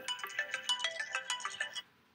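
A phone's melodic ringtone: a quick run of short, bright electronic notes lasting a little under two seconds, then stopping.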